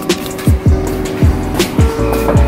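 Background music: a beat with deep bass-drum hits that drop in pitch, over held chords.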